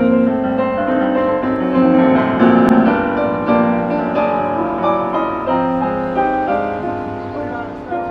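Live jazz band playing, the electric keyboard carrying the tune in a run of chords and notes.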